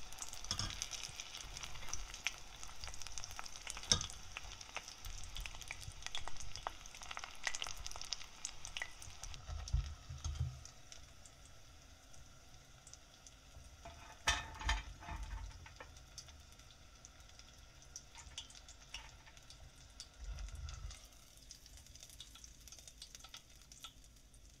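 Breaded cheese pork cutlets deep-frying in oil in a stainless steel pot, the oil crackling and sizzling, with a few sharp clicks of metal tongs as the cutlets are turned and lifted out. The sizzling thins out after about the middle, as the cutlets come out of the oil.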